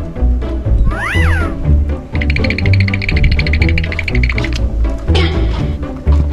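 Background music with a steady bass line and a single cat meow, rising and then falling in pitch, about a second in. A rapid, evenly repeating high pulsing follows for about two seconds in the middle.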